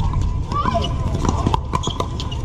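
Sharp hollow pops of pickleball paddles striking the plastic ball and the ball bouncing on the hard court, several in quick succession from this and nearby courts, with players' voices in the background.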